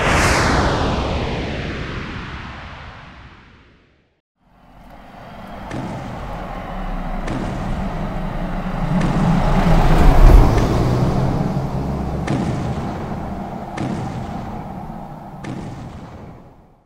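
A sudden blast that sweeps down in pitch and dies away over about four seconds, then, after a short gap, a deep rumble that swells and fades under heavy thuds about every second and a half: sound effects of a giant monster's footsteps.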